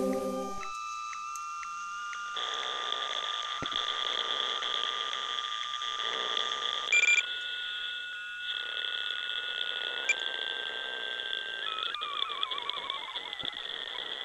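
Electronic spacecraft warning tones signalling system failure: several steady held pitches that switch every few seconds, a short beep about seven seconds in, and wavering warbling sweeps near the end.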